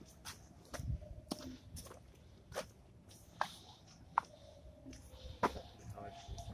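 Footsteps on a stone-paved path: short, light clicks roughly every half second to second.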